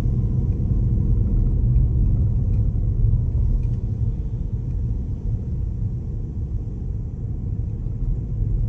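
Steady low rumble of a car driving along a lane, engine and tyre noise heard from inside the cabin, easing slightly in the second half.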